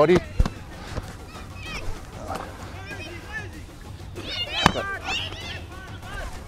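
A rugby ball smacking into hands during short passes: two sharp slaps, about half a second in and again near five seconds, with faint voices or chirps in the background.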